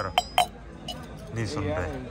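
Steel tumbler knocked three times in quick succession on a marble tabletop, sharp ringing metallic clinks, a way of calling the waiter over.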